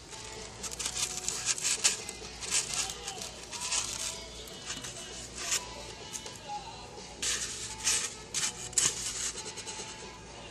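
Styrofoam scratching and squeaking in irregular bursts as a round foam disc is handled and its rough edge is trimmed with a handheld hot-wire foam cutter.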